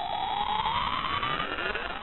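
Synthesized rising-sweep sound effect for a loading-bar intro: one electronic tone climbing steadily in pitch, with a fizz of many small chirps around it.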